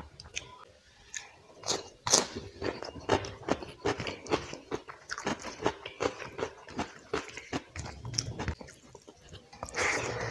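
Close-miked chewing of curry and rice eaten by hand: wet mouth clicks and lip smacks, about three a second, starting a couple of seconds in.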